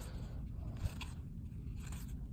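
Faint scraping and rustling of cardboard trading cards being slid and shuffled between the fingers, with one small tick a little under a second in.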